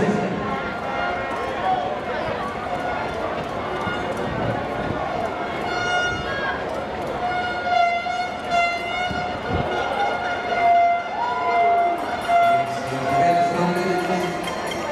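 A horn blown in the stands in several long, steady blasts through the second half, over the background hubbub of a stadium crowd and a commentator's voice.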